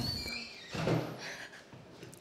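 A classroom door being opened, with a brief high squeak at the start. A faint murmur of voices comes about a second in.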